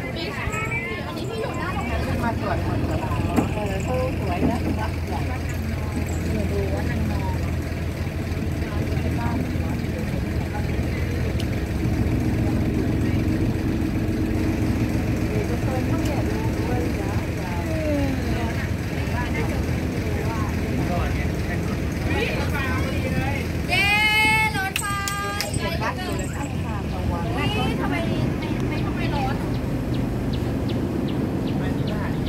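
Canal tour boat's engine running steadily at cruising speed, with people's voices over it and a louder call about 24 seconds in.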